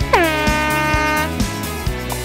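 A hand-held aerosol air horn gives one blast of about a second, its pitch dropping at the onset and then holding steady: the start signal for the swim. Background music with a steady beat runs underneath.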